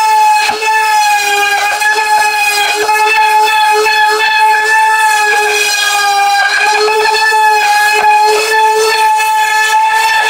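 Small handheld router running at a steady high-pitched whine as it cuts a trench into a foam shield blank, the pitch wavering slightly as it is pushed through the foam.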